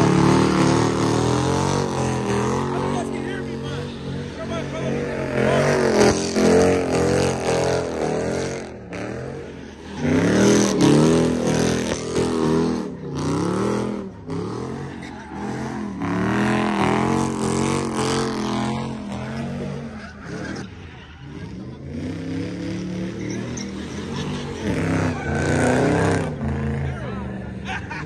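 Car engine revving hard, its pitch climbing and falling again and again, with tire squeal as a car spins donuts and burns its tires into a cloud of smoke.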